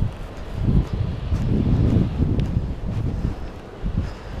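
Wind buffeting the microphone, a low rumble that rises and falls in uneven gusts.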